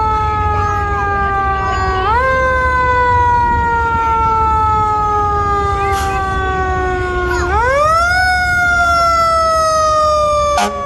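Fire engine siren: a single wailing tone that slowly sinks in pitch and twice swoops quickly back up, about two seconds in and again near the eight-second mark, over a low engine rumble.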